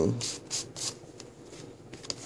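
Cardstock sliding and rustling as a card is pulled out of a pocket in a paper mini album: a few short scrapes within the first second, then quieter handling.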